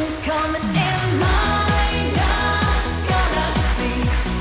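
Upbeat German schlager pop song with a female lead vocal over a steady kick-drum beat, about two beats a second. The beat drops out for under a second near the start and comes back in after a falling sweep.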